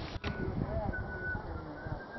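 Outdoor background of faint, indistinct voices with a few short bird whistles about a second in.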